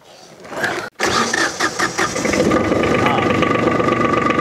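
Two-cylinder 724cc diesel tractor engine being started on a lithium battery: about a second in the starter cranks it briefly, and the engine fires and settles into a steady run. It starts quickly and easily, 'like a champ', now that the battery is wired straight to the terminals instead of through jumper cables.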